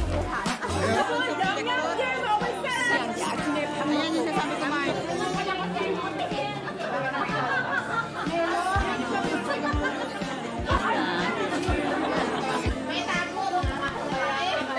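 A pop song with a steady beat plays under the overlapping chatter of a group of people talking in a large room.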